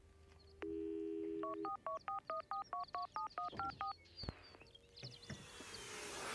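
Telephone dial tone held for about a second, then a quick run of about a dozen touch-tone (DTMF) beeps as a number is dialed.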